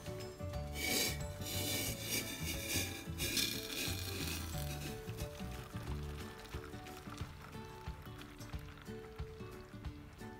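Liquid poured from a stainless steel pot into a small stainless steel cup of dried seaweed, loudest as two splashy bursts in the first few seconds and quieter after. Background music plays throughout.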